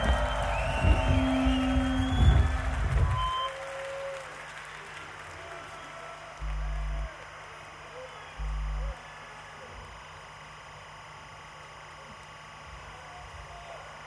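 Distorted electric guitars, bass and drums of a death-metal band ending a song with a held chord, cutting off about three seconds in, followed by crowd applause and cheering. Two short low thuds from the stage come through the crowd noise, about two seconds apart, midway through.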